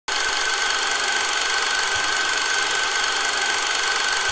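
A steady mechanical running noise with a constant high whine, starting suddenly and holding unchanged.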